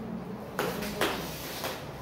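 Bare feet scuffing and shifting on a foam floor mat as two wrestlers strain against each other, with three short noisy scuffs about half a second apart.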